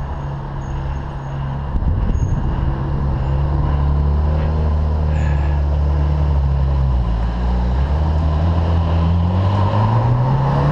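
Ferrari 458 Italia's 4.5-litre V8 running at low revs close by, a steady deep drone. It grows louder about two seconds in and rises a little in pitch near the end.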